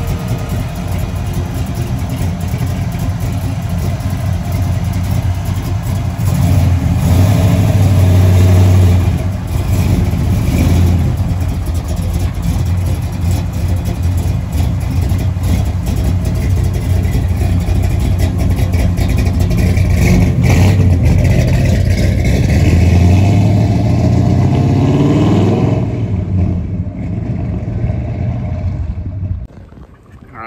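A 1963½ Ford Galaxie's carbureted engine running as the car pulls out and drives off. It revs up with a rising pitch a few seconds before the end, then fades away. The carburetor float has just been lowered to stop fuel pouring from the front vent.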